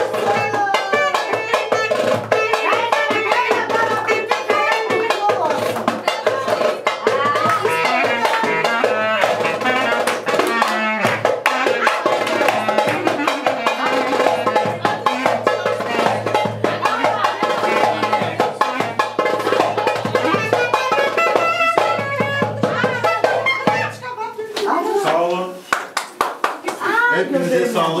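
Live band music: a wavering melodic lead over steady, rhythmic percussion. The music thins out about four seconds before the end, and voices and a laugh follow.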